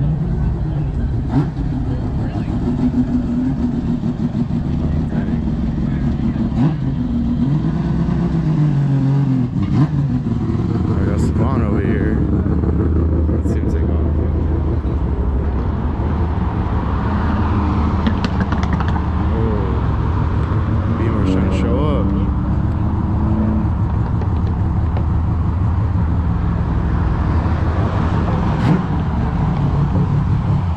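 A car engine idling steadily, with people talking nearby.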